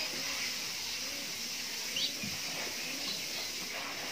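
Steady background hiss of cowshed ambience with faint low murmurs and one short high chirp about two seconds in.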